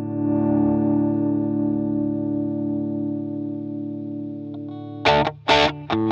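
PRS CE 24 electric guitar played through a Klon-style overdrive pedal into a Mesa/Boogie amp. A held overdriven chord rings and slowly fades, then about five seconds in short, choppy strummed chords start.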